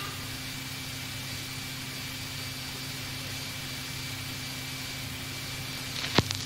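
Steady tape hiss with a low hum and a faint high whine from an old cassette recording of a sound system, heard in a break between tunes.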